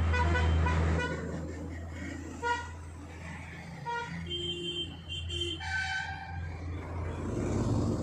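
Road traffic: vehicle horns tooting, short toots at the start, about two and a half seconds in and about four seconds in, then a longer toot in a different pitch, over a steady low engine rumble.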